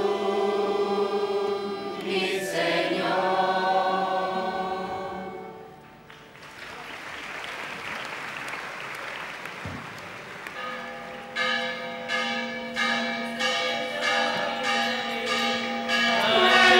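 A large mixed choir singing a devotional song, which ends about six seconds in. A few seconds of applause follow. A held harmonium-like drone and tabla strokes then start the next piece.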